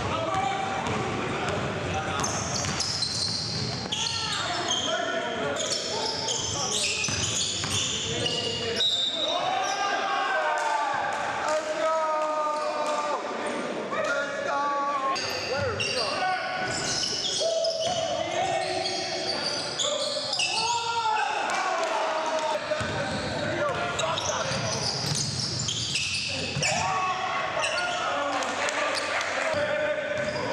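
Live game sound of indoor basketball: a ball bouncing on a hardwood gym floor as players dribble, with players' voices calling out.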